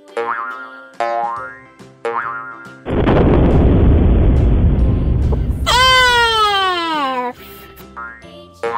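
Cartoon sound effects over children's music. Short twangy notes bend up in pitch about once a second. Then comes a loud cartoon explosion with a deep rumble lasting nearly three seconds, followed by a tone that slides down in pitch over about a second and a half.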